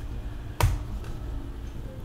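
A single sharp click a little over half a second in, over a low steady background hum.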